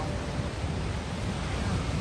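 Surf breaking and washing on a sandy ocean beach as a steady roar, with wind rumbling on the microphone.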